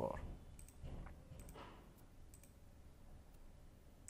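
Several faint, spaced clicks of a computer mouse, about one a second.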